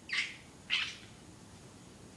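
A baby giving two short, high-pitched squealing giggles, one right at the start and another just under a second in.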